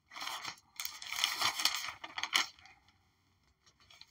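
Crinkling, rustling handling noise, like paper or a wrapper being handled, in three bursts over the first two and a half seconds, then quiet.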